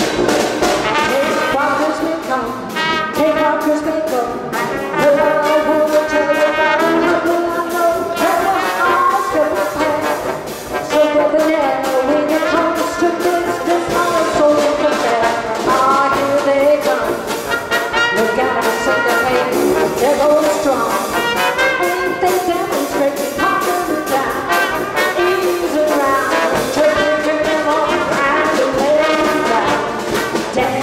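A traditional jazz band playing live, with trumpet and trombone leading the ensemble over clarinet, tuba, banjo, piano and drums.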